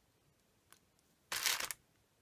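A short crinkling rustle of foil and paper, about half a second long, a little past the middle, as the punched coffee-bag foil disc and eyelet punch pliers are handled on baking parchment; a faint click comes shortly before it.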